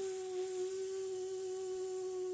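A woman imitating a bee: one long, steady-pitched voiced "bzzz" buzzed through clenched teeth.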